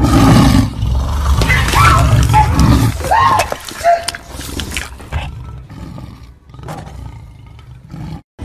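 A loud roar, followed by several short, high cries that rise and fall within the first four seconds, then quieter commotion.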